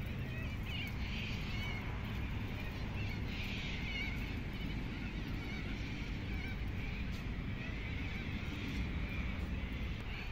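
Faint, wavering bird chirps over a steady low rumble.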